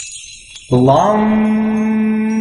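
A voice chanting one long mantra syllable, coming in about two-thirds of a second in with a quick upward slide in pitch and then holding a single steady note. Before it, faint high bell-like chimes ring.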